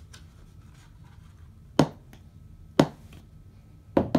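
A small knee hockey ball bouncing on a hardwood floor: two sharp knocks about a second apart, with faint hand-handling rustle between them.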